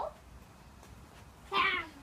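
A young child's short, high-pitched "yeah" about a second and a half in, after quiet.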